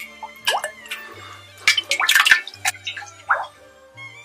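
Jiangshui being ladled out of an earthenware crock: a run of splashes and drips of liquid, loudest about two seconds in, over steady background music.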